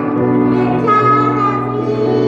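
Two young children singing together into microphones over an electronic keyboard accompaniment, holding long notes.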